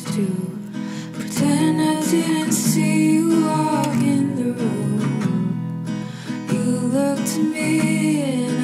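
A song playing, led by acoustic guitar.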